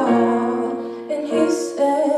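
A woman singing a solo with a microphone, accompanied by piano chords on an electric keyboard; she holds long notes with a short break for breath about halfway through.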